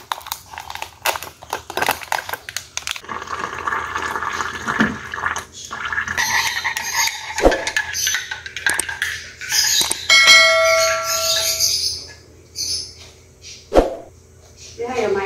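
A drink being made in a ceramic mug: a sachet rustled and tapped out, then a spoon stirring and clinking in the mug. A clear bell-like ring lasts about a second and a half about ten seconds in, and there are two sharp knocks, one midway and one near the end.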